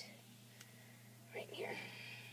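Quiet room tone with a steady low hum, then a brief soft whisper near the end.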